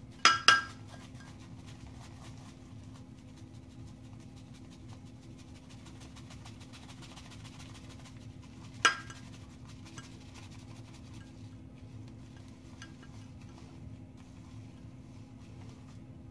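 A few sharp clinks of a ceramic shaving mug being handled: two close together at the start and one about nine seconds in, over a steady low hum.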